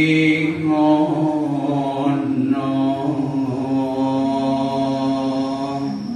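Javanese macapat singing: a slow, unaccompanied vocal line of long held notes that waver and slide gently in pitch, with a phrase ending near the end.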